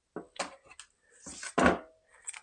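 Plastic package of beef ribs handled and set down on a wooden cutting board: a few light knocks and taps, then a louder rustle and thump about a second and a half in.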